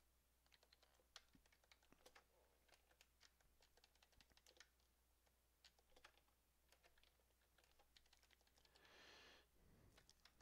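Faint computer keyboard and mouse clicks, irregular and sparse, as code is selected and copied with keyboard shortcuts. A short soft rush of noise comes about nine seconds in.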